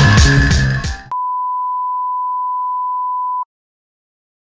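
Background music with a strong beat cuts off abruptly about a second in and gives way to a steady single-pitch test-tone beep, the tone played with TV colour bars, which holds for about two and a half seconds and then stops.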